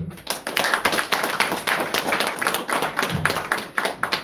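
Audience applause: many hands clapping at once.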